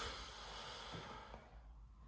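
A faint breathy hiss, like an exhaled breath, that fades away over about a second and a half, then near-quiet room tone.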